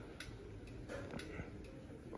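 A few faint, irregular ticks over a quiet, low background hum.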